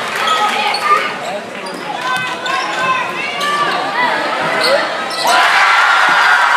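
A basketball dribbling on a gym's hardwood floor among shouting voices from players and spectators, echoing in a large gym. About five seconds in, the crowd noise swells suddenly as a shot goes up.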